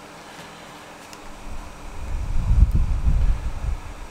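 A low, uneven rumble of air or handling noise on the microphone starts about a second and a half in and lasts about two seconds, much louder than the rest. Under it, a few faint ticks come from small scissors snipping a soft reptile eggshell.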